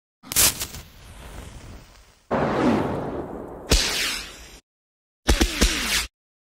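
Produced title-sequence sound effects: a sharp hit about half a second in that dies away, then a whoosh with a falling sweep, another hit, a short silence, and a quick cluster of hits with falling sweeps near the end.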